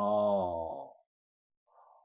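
A man's drawn-out vowel at the end of his sentence, held for under a second with its pitch sinking slightly as it fades, then silence and a faint short breath near the end.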